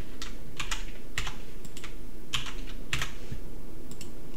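Computer keyboard typing: about ten separate, irregularly spaced keystrokes as a password is typed in.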